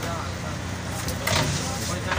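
Bus running, heard from inside the passenger cabin: a steady low engine and road rumble with a brief rattle a little over a second in, and voices in the background.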